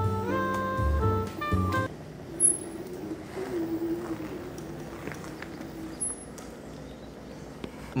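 A short tune of held, stepping notes over the first two seconds. Then a faint wavering drone from a low-powered rental scooter's small engine, labouring on a hill climb.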